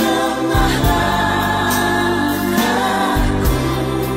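Christian Christmas song: a choir singing over instrumental backing with a steady beat.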